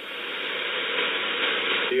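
Shortwave receiver's single-sideband audio on 40 m in a gap between transmissions: an even hiss of band noise, thin with no highs, slowly swelling a little.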